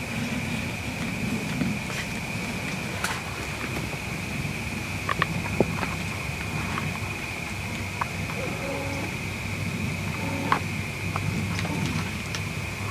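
Outdoor ambience through a hunting ground blind: a steady high-pitched whine, a low rumble and a few faint scattered clicks.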